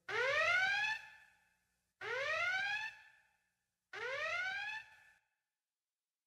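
A rising, siren-like electronic whoop repeated three times about two seconds apart, each repeat fainter than the last: an echo-delay tail on a sound effect closing out the DJ mix.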